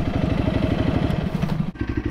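Honda CRF300 single-cylinder four-stroke motorcycle engine idling steadily, then cutting out near the end.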